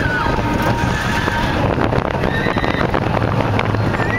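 Roller coaster ride: a loud, steady rush of wind and train noise, with riders letting out several long, high held screams, one just at the start and more in the second half.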